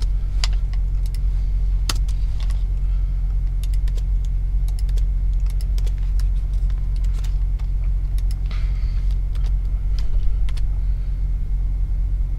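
Computer keyboard keystrokes, sparse and irregular, with a short quicker run of typing a little after halfway, over a steady low hum.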